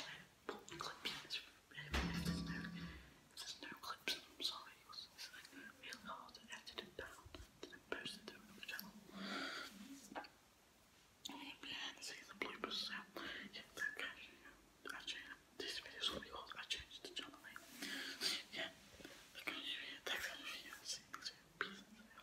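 A boy whispering to the camera in short phrases with pauses, briefly louder and fuller about two seconds in.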